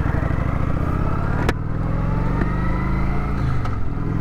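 Cruiser motorcycle engine running under way as the bike accelerates, its pitch climbing steadily and dipping briefly near the end. A sharp click about a second and a half in.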